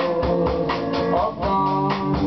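Band music: an electric guitar plays sustained notes, some of them bent up and down in pitch, over a steady drum-kit beat.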